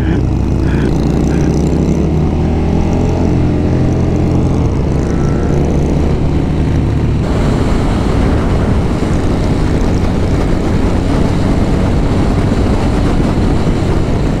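KTM Super Duke GT's V-twin engine pulling under acceleration, its note rising steadily in pitch, with wind rushing over the microphone. About halfway through, the engine note gives way to a steady rush of wind and road noise.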